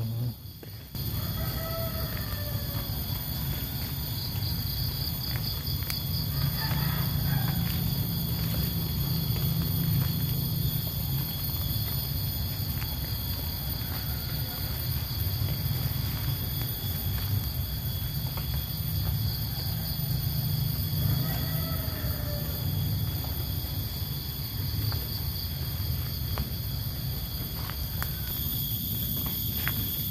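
Forest ambience: a steady high insect drone, with short birdcalls about two seconds in and again around twenty seconds, over a constant low rumble.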